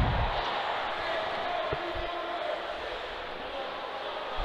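Ice hockey rink ambience during play: a steady murmur of crowd and arena noise, slowly fading, with a low thump right at the start and a couple of faint knocks about two seconds in.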